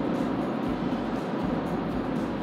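Steady road and tyre noise heard inside the cabin of a moving Rivian R1T electric pickup, an even hiss with no engine note.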